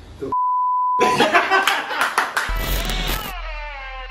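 A single steady beep tone, held for just under a second, starting about a third of a second in. It is followed by a busy burst of noisy, clicking sound effects, and near the end by several tones that slide downward together.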